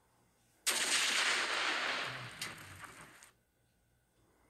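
Hand grenade exploding: a sudden blast about a second in, then a rushing noise that fades over two to three seconds, with a couple of short cracks as it dies away.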